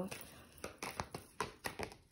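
A deck of oracle cards being shuffled by hand: a quick run of soft card taps and flicks, about seven in a second and a half.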